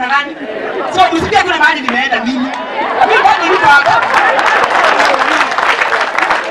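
A woman speaking into a microphone. From about halfway, many crowd voices overlap with her into a dense chatter.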